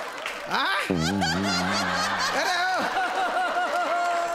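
People laughing heartily, breaking into a quick run of 'ha-ha-ha' bursts in the second half.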